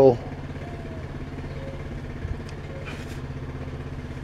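A steady low mechanical hum, with a faint click a little past two seconds in.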